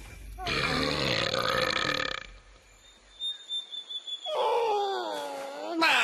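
Cartoon creature vocal sounds from the Marsupilami: a rough, burp-like grunt lasting about two seconds, a few soft clicks, then a long pitched cry that dips and rises, breaking into a loud noisy yell near the end.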